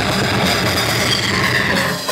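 Live metal band playing loud, dense, distorted music, with a six-string electric bass driving the low end.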